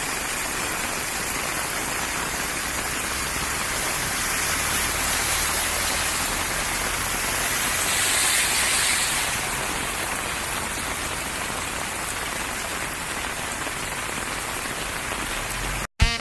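Torrential rain pouring onto a flooded street, a steady hiss. About eight seconds in, a car drives close past through the floodwater and its splash swells the hiss for a second or two.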